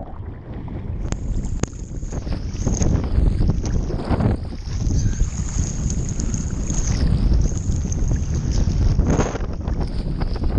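Choppy sea water sloshing and splashing around a camera held at the water's surface, with wind buffeting the microphone in a heavy low rumble.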